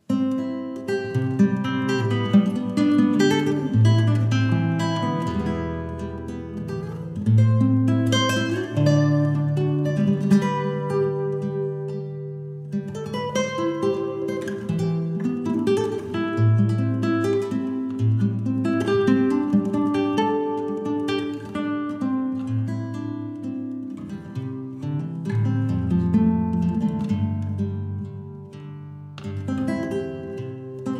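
Solo classical guitar played fingerstyle, a melody over moving bass notes, starting suddenly out of silence. The playing softens briefly near the end before picking up again.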